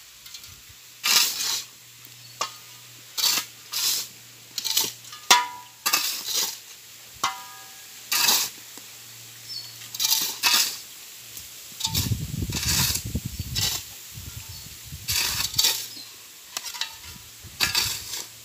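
Steel shovels scraping and clinking on gravel and hard ground as a dry cement and sand mix is turned over by hand, in repeated short strokes about once a second, a few with a brief metallic ring. A low rumble comes in for about two seconds near the middle.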